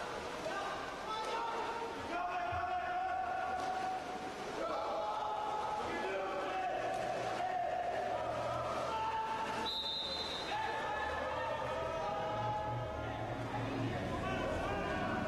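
Voices shouting long drawn-out calls across an indoor pool during a water polo game, over steady splashing. A short high whistle sounds about ten seconds in.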